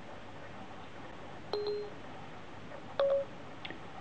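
iPhone 4S Siri tones: two short electronic beeps about a second and a half apart, the second a little higher, each with a soft click at its start, as Siri is called up to take a voice command.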